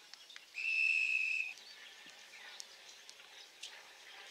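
Umpire's whistle blown once: a single steady, high-pitched blast lasting about a second, starting about half a second in.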